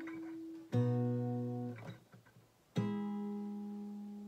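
Acoustic guitar playing plucked barre chords high on the neck: a new chord is plucked about a second in and another near three seconds, each left to ring and fade.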